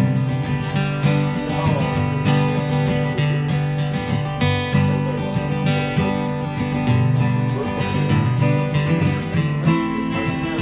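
Acoustic guitars strumming and picking an instrumental passage of a country-folk song, with steady rhythmic strums under ringing melody notes.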